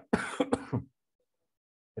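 A man clears his throat once, a rough, noisy sound lasting under a second, followed by about a second of near silence.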